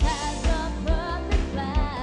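Singing over upbeat pop backing music with a steady beat of about two strokes a second: the cartoon's theme song.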